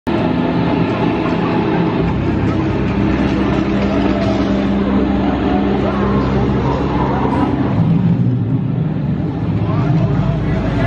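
A loud, steady low droning rumble with indistinct voices mixed in: the ambient soundscape of a walk-through haunted-house attraction.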